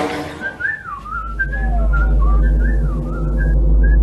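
Someone whistling a wavering, gliding tune, over a steady low hum that comes in about a second in.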